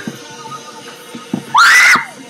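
A pop song plays in the background, then about one and a half seconds in a girl gives a short, very loud, high-pitched scream that rises in pitch.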